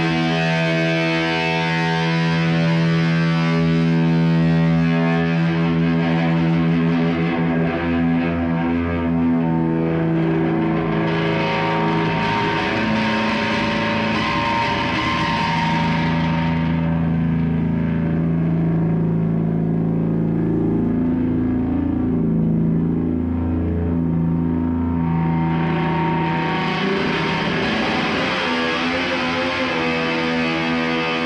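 Electric guitar played through effects and distortion, holding dense, sustained droning tones. The upper range thins out in the middle and fills back in near the end.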